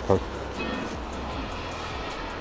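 Quiet background music over a steady low hum, after a last spoken word at the very start.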